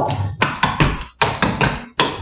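Clogging shoe taps striking a hard floor in a quick, uneven run of about ten taps: the doubles and steps of a Birmingham clogging step being danced.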